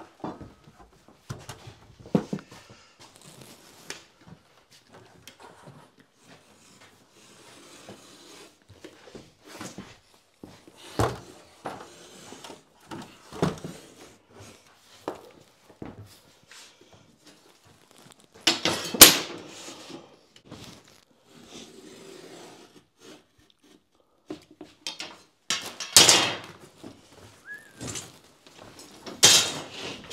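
Scattered knocks, taps and scrapes from handling a drywall sheet and a drywall T-square on a bare floor. Three louder, rougher scraping bumps stand out, one about two-thirds of the way in and two near the end.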